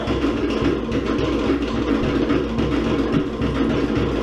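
Live Cook Islands dance music from a band, driven by fast, steady drumming, played for an ura dance.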